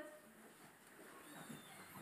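Near silence: the room tone of a large hall, with faint small rustles and knocks.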